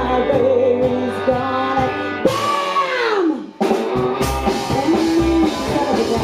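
Live trash-country band playing loudly, with electric guitars, drums, bass and a singer. About two seconds in, a long falling pitch glide sweeps down. The band drops out for a moment and then crashes back in.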